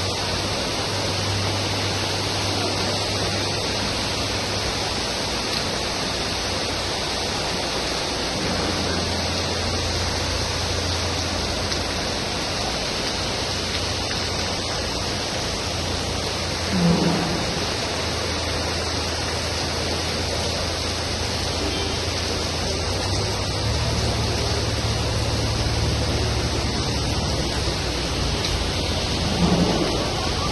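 Heavy rain falling, a loud steady hiss with a low rumble underneath. Two brief low thumps stand out, a little past halfway and near the end.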